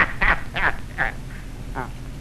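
One person laughing: a run of short 'ha' sounds that grow weaker and die away.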